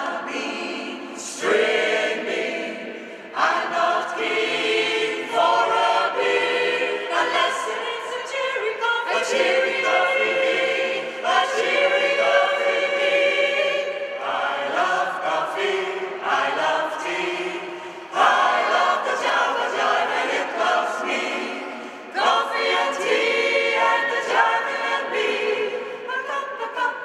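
Mixed choir of men's and women's voices singing a cappella in close harmony, in phrases separated by brief breaks, each phrase entering strongly.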